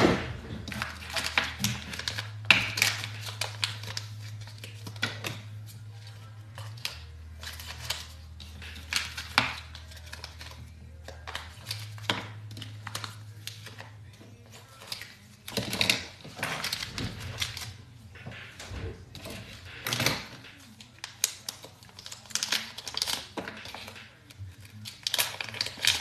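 Clicks and crinkling from plastic bags being unwrapped and oyster shells being handled and pried open with a shucking knife, in irregular clusters. Faint background music with low held notes that change pitch a few times runs underneath.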